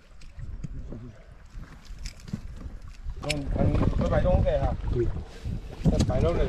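Wind rumbling on the microphone and water lapping at the boat while a gill net is hauled in over the side. A sharp knock comes a little after three seconds in, followed by loud, excited voices.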